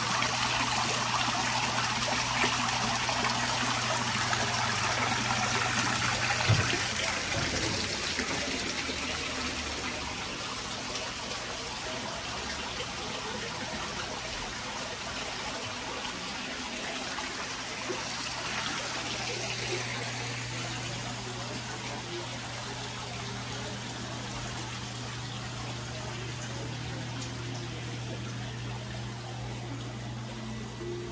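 Water from a small stone waterfall splashing and trickling steadily into an indoor koi pond, louder for the first several seconds and then softer. A steady low hum runs underneath.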